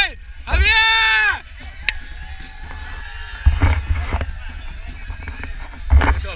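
Football players shouting as they celebrate on the pitch. One man's loud, held yell lasts about a second just after the start and rises then falls in pitch, followed by scattered voices and a low rumble on the handheld microphone.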